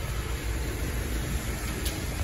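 Car engine idling close by: a steady low rumble.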